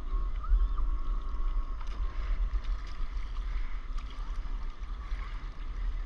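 Stand-up paddle blade dipping and pulling through calm seawater, with a steady low wind rumble on the microphone.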